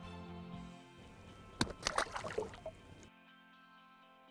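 Background music, with a short splash and sloshing of water about one and a half seconds in as a released walleye is dropped back into the lake.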